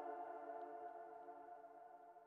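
Software synthesizer pad on the 'Cumulus' preset holding a chord of several steady notes. The chord fades slowly and quietly away.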